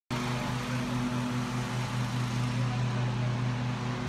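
Steady low mechanical hum at a constant pitch, with a light noisy hiss over it.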